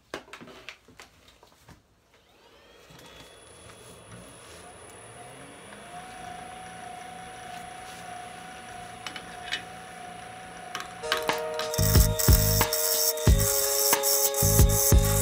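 Wood lathe being started with a small ebony blank in the chuck: the motor runs up to speed with a rising whine, then settles into a steady hum. About eleven seconds in, background music with a beat comes in loudly over it.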